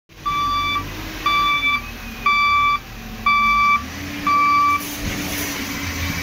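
Wheel loader's reversing alarm beeping five times, about once a second, over the loader's engine running, as the machine backs up.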